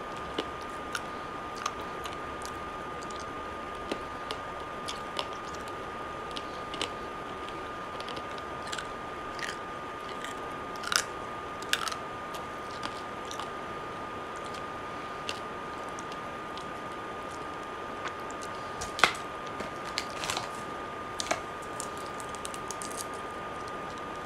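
Scattered sharp clicks and crunches of chewing, about a dozen spread unevenly, over a steady faint high whine.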